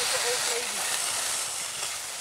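Skis sliding over hard-packed snow, a steady scraping hiss. A few faint, short voice-like calls sound in the first half second.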